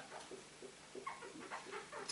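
Marker pen squeaking faintly on a whiteboard while words are written, a run of short, irregular squeaks.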